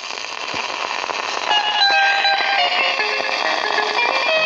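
A worn 7-inch vinyl record starting to play on a turntable: loud surface hiss and crackle come in suddenly. About a second and a half in, the high guitar lines of the song's intro rise out of the noise.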